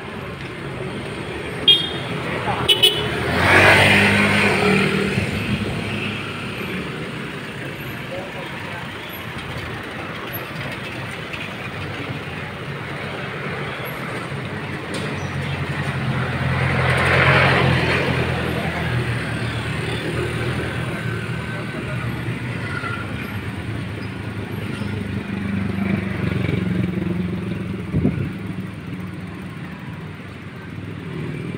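Street traffic: vehicles passing close by, loudest about four seconds in and again about seventeen seconds in, with engines running low in between. Two sharp clicks come near the start and a short thump near the end.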